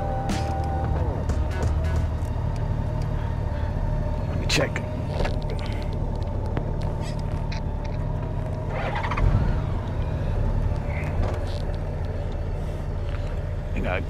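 Touring motorcycle engine running at idle, a steady low rumble, as the bike creeps slowly into a parking spot.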